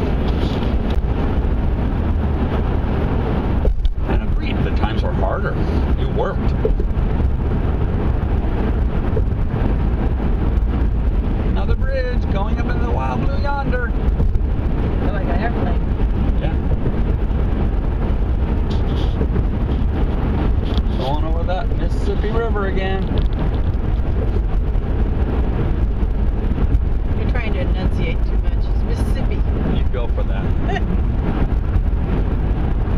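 Car driving at road speed, heard from inside the cabin: a steady low rumble of tyre, road and engine noise.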